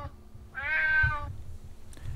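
Domestic cat meowing once, a single drawn-out meow of just under a second starting about half a second in.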